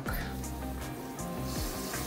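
Background music. About one and a half seconds in, a soft hiss starts as granulated sugar begins streaming from a plastic bowl into a pot of cherry juice.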